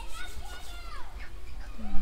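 Children's voices calling and playing, with many short high-pitched calls, over a steady low rumble.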